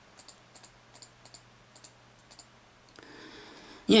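About a dozen light, irregular plastic clicks from a computer's controls as pictures are paged through, stopping about two and a half seconds in.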